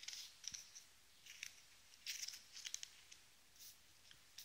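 Faint, scattered rustling and light scraping of stiff paper as the cardstock pages of a handmade scrapbook album are handled and turned, with a small cluster about two seconds in.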